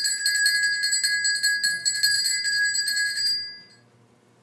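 Altar bells shaken rapidly in a steady run of rings, marking the elevation of the consecrated host at Mass; the ringing stops about three and a half seconds in.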